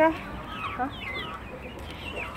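Chickens clucking, a handful of short falling calls in the first second that thin out afterwards.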